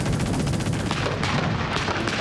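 Machine-gun fire in a rapid, even stream. About halfway through it gives way to scattered, irregular gunshots, over a steady low rumble of battle.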